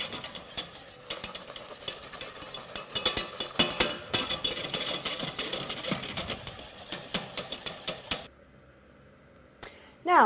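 Wire balloon whisk beating quickly against a stainless steel saucepan, a fast run of metal clicks and scrapes, as roux is whisked into hot stock over high heat to thicken it into a sauce. It cuts off suddenly about eight seconds in.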